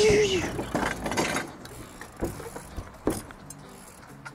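BMX bike being ridden and manoeuvred on asphalt: a few short knocks and rattles from the bike, about a second apart. A brief wavering tone fades out in the first half second.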